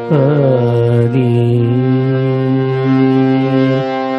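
A man singing a Tamil devotional song with instrumental accompaniment. His voice glides down at the start, then holds one long note that ends just before the close, while the steady accompaniment carries on.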